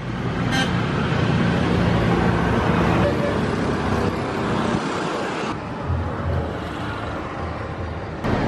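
Outdoor street noise at a roadside gathering: a motor vehicle running close by, with a steady low hum in the first few seconds, and people's voices underneath.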